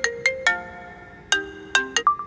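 Mobile phone ringtone playing a melody of short, bright notes. A quick run of notes ends about half a second in, and after a brief pause a second phrase begins a little after a second.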